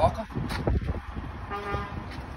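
A short, steady toot, like a distant vehicle horn, about one and a half seconds in, over a low outdoor rumble.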